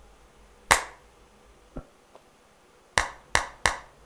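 Hand claps picked up by a gooseneck microphone to trigger a sampler's threshold recording: one sharp clap under a second in, then three quick claps about a third of a second apart near the end.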